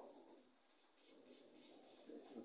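Near silence: room tone, with a faint low murmur.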